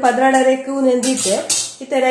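Stainless steel pot and lid clinking and clattering as they are handled, with a sharp metallic clatter about one and a half seconds in, under a woman's voice.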